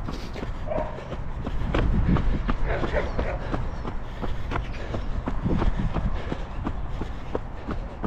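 Running footsteps on a muddy dirt trail, about three strides a second, over a steady low rumble of wind and handling on a handheld microphone.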